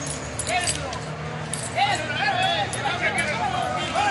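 Several people at the scene talking in raised voices, louder from about halfway through. Underneath runs a steady low hum, with a few light clicks.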